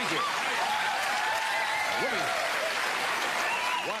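Studio audience applauding, with cheers and whoops over the clapping; the sound cuts off abruptly at the end.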